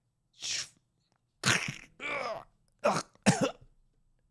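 A man coughing: a short breath, then two drawn-out rough coughs, then two sharp coughs in quick succession near the end.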